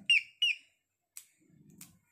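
Two short, high chirps that drop in pitch, typical of a small bird calling nearby, then a couple of faint clicks.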